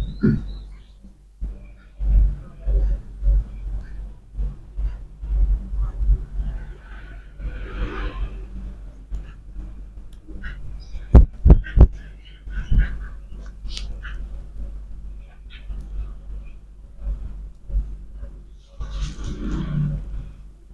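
Hands working a head massage on a person's scalp and face: irregular dull thumps with soft rubbing, and a quick run of sharp clicks about eleven seconds in.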